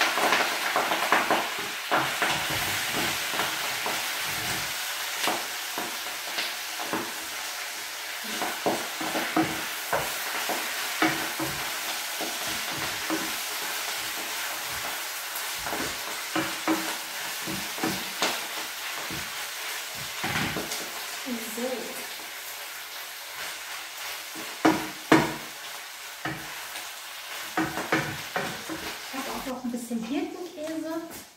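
Greens frying with a steady sizzle in a stainless steel pot, stirred with a wooden spoon that knocks and scrapes against the pot again and again.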